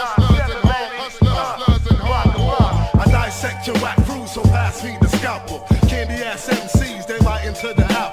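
Boom-bap hip hop track: a rapper's vocal over punchy drums and a deep bass line.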